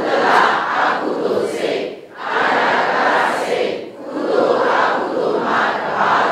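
Many voices reciting together in unison, in phrases about two seconds long with short breaths between them.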